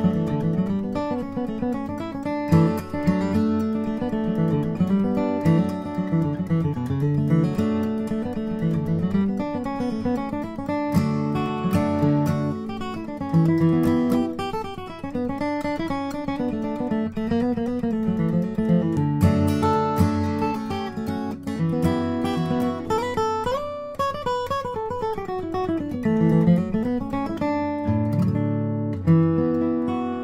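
A 2009 Bourgeois DB Signature dreadnought acoustic guitar, with an Adirondack spruce top and Madagascar rosewood back and sides, is played in the key of A. Picked single-note runs mix with strummed chords, with a few sliding notes about three-quarters of the way through. It is recorded close with a pair of pencil condenser microphones.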